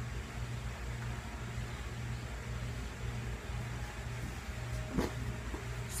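Steady low hum of a small room's background noise, with a short click about five seconds in.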